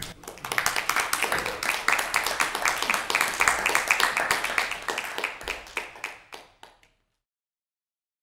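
A roomful of people clapping, starting just after the motion is declared unanimous and dying away after about six seconds, then cut off into silence.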